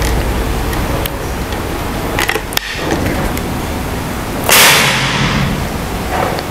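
A Moser UK Ultimate PCP air rifle, magazine version, has its action worked with a few sharp metallic clicks and is then fired once, about four and a half seconds in: a loud crack with a short hiss after it. This is a high-power shot that clocks about 1012 fps on the chronograph.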